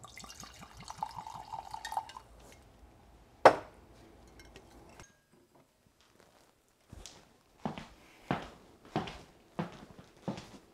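Scotch poured from a bottle into a glass for about two seconds, then a single sharp clink, the loudest sound here, as glass or bottle is set down. Near the end, high-heel footsteps click on a tile floor, about five steps a little over half a second apart.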